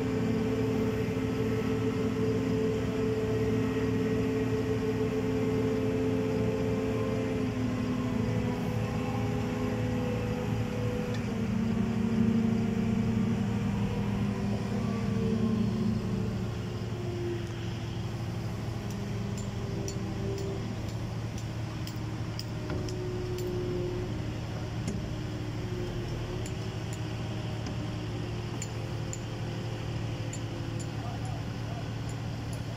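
Diesel engine of a mobile crane running steadily, its pitch stepping up about eleven seconds in and dropping back around sixteen seconds as the engine speed changes. In the second half, faint light ticks sound over the engine.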